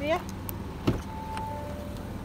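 Front door of an Audi A7 Sportback being opened: a click from the handle, then a louder clunk as the door unlatches, followed by a short steady tone, over a steady low hum.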